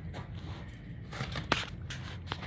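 A dog moving about while searching at the foot of a bed: faint scuffs and a few light clicks from paws and claws on the floor, over a low steady hum.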